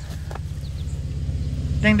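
A low, evenly pulsing engine rumble, typical of a passing motor vehicle, growing steadily louder. Near the end a man starts chanting "ding, ding".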